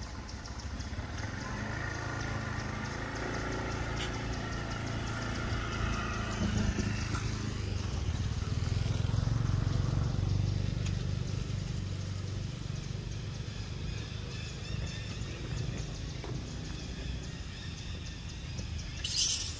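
A motor vehicle engine running nearby, building to its loudest about halfway through and then easing off.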